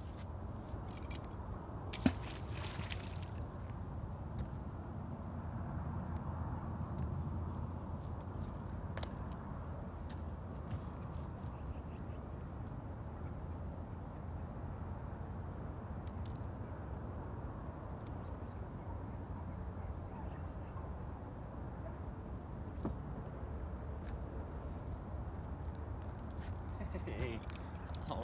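Steady low wind rumble outdoors. About two seconds in, a sharp knock and a short burst of noise follow, which fit a fishing magnet on a rope being thrown and landing in the water. Faint scattered clicks come later.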